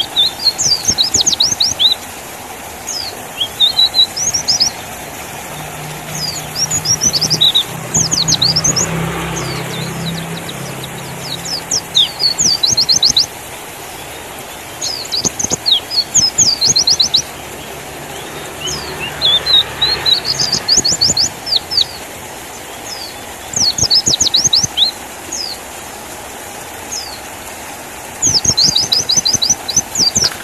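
White-eye (pleci) singing in repeated one- to two-second bursts of rapid, high-pitched chirping trills, with short pauses between bursts. A faint low engine hum passes in the background from about six to twenty seconds in.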